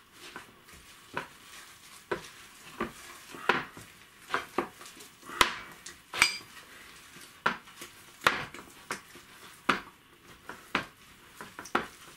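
Glass mixing bowl clinking and knocking irregularly, about once a second, as a gloved hand squeezes and mixes thick gram-flour batter inside it; one brighter, ringing clink about six seconds in.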